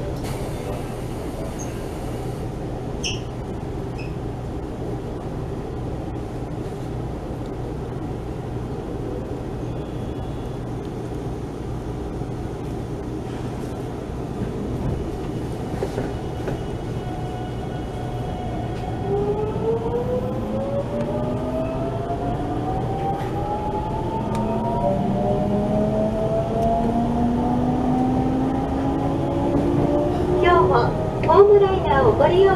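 Electric train standing at a platform with a steady low hum, then pulling away: its traction motors give a whine of several tones rising in pitch, starting about two-thirds of the way through and growing louder as it speeds up.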